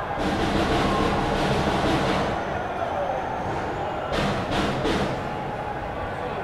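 Electroacoustic soundscape composition: a dense wash of noise with voices mixed in. It swells for the first two seconds and again around four to five seconds in.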